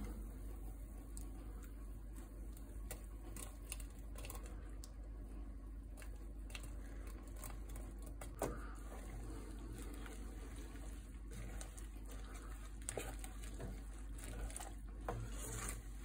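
Sliced jalapeño rings being slid and pushed off a cutting board with a wooden spoon into a pot of hot sugar syrup: faint scattered patter and light ticks, with one slightly louder knock about eight seconds in, over a steady low hum.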